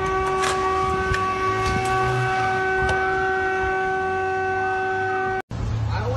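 A vehicle horn held down in one long, steady, unbroken blast that cuts off abruptly about five and a half seconds in, followed by a low steady hum.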